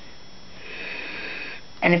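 A man draws a breath in through his nose, a soft sniff lasting about a second; his speech starts again near the end.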